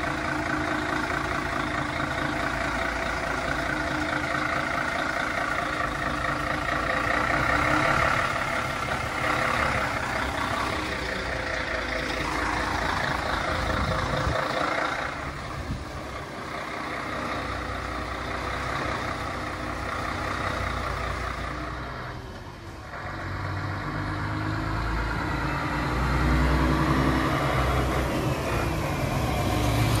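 Diesel engine of a Mercedes-Benz grab lorry running as the lorry creeps slowly along, with the low engine sound growing louder over the last few seconds as it comes close.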